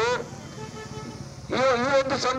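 A man speaking Kannada into a handheld microphone, pausing for a little over a second and resuming about a second and a half in; in the pause only a faint steady outdoor background noise is heard.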